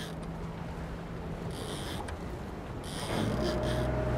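A boat's engine running steadily under wind and sea noise, with two short spells of hiss in the middle and a louder low rumble coming in near the end.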